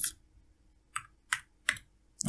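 Computer keyboard keys typed: three short clicks, roughly a third of a second apart, about halfway through.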